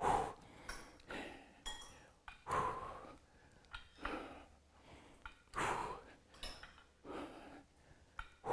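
A man breathing hard from the effort of lifting dumbbells, in short, noisy breaths roughly once a second.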